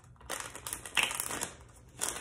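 Tarot cards being shuffled and handled, a rapid rustling with many small clicks lasting about a second and a half.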